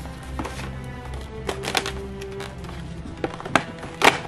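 Soft background music, with several sharp clicks and scrapes of fingernails prying at the cardboard door of an advent calendar, a cluster about a second and a half in and two more near the end.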